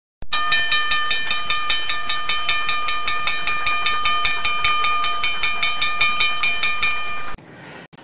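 Intro jingle: a sustained, chord-like tone held over a fast, even ticking pulse. It cuts off suddenly about seven seconds in.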